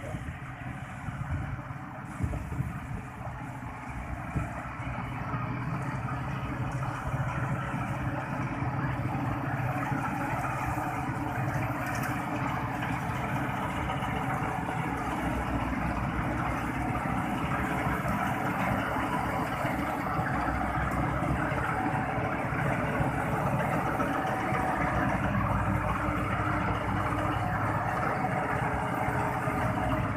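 Kubota 5501 tractor's four-cylinder diesel running steadily under load, driving a PTO straw reaper that cuts stubble and blows the straw into a trailer. The combined machine noise grows a little louder over the first few seconds, then holds steady.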